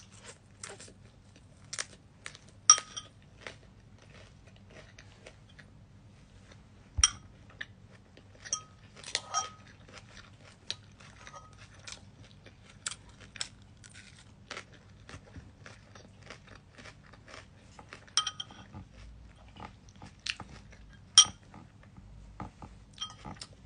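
Close chewing and crunching of food, with a metal spoon and fork clicking and clinking against a ceramic bowl at scattered moments. The sharpest, ringing clinks come about three seconds in and near the end.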